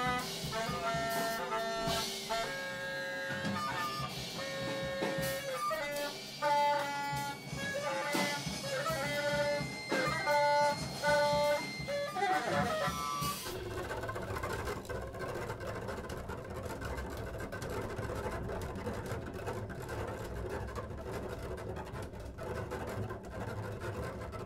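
Large improvising ensemble of horns, guitars, strings and drums playing live: a stretch of short, stabbing and held pitched notes, then about 13 seconds in a sudden switch to a dense, noisy, rumbling mass of sound with few clear pitches.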